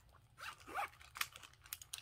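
Quiet handling noise of a clear vinyl pen pouch and its pens being lifted out of a tote bag, with a couple of light clicks in the second half.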